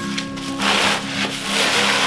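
Bubble wrap rustling and crinkling as a wrapped paddle is drawn out of a cardboard box, in two long rustles over background acoustic guitar music.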